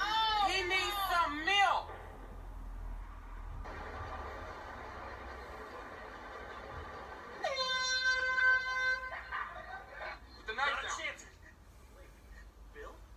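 Vine clips playing through a tablet's small speaker: voices at the start, then about halfway through a loud, steady, pitched blast lasting about a second and a half, then more voices near the end.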